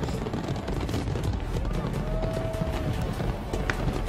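Large fireworks display: a continuous, dense rumble of bursting shells mixed with crackling, with music playing along.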